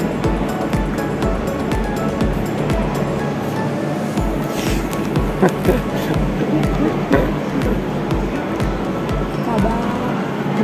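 Background music with a steady beat, about two low kick-drum thumps a second.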